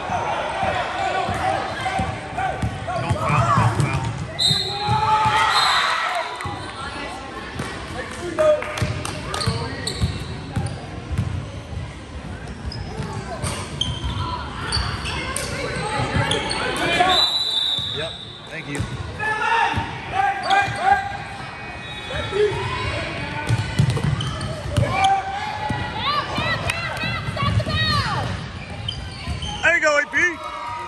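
A basketball is dribbled on a hardwood gym floor, with its thuds ringing in a large hall. Voices shout across the court, and a few short high squeaks come through.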